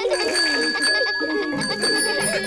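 Bicycle bell ringing with a sustained ring, over children laughing and light background music.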